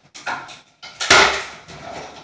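Rummaging in wooden kitchen cabinetry: a light knock, then a sharp wooden bang about a second in that dies away over half a second.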